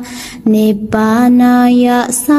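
A single voice chanting a Pali sutta in a slow, even melodic tone, holding long notes. The chant opens with a short hiss.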